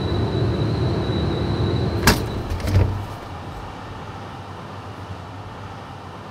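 Industrial drum laundry machine running with a steady hum and a thin high whine, then a sharp click of its door latch about two seconds in and a thud shortly after as the door is swung open; the hum falls quieter after that.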